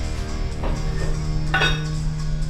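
Background rock music, with two metallic clinks of a steel weight plate being handled and loaded onto a barbell. The louder, ringing clink comes about one and a half seconds in.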